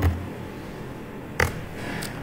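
A computer keyboard key struck once, a sharp single click about one and a half seconds in.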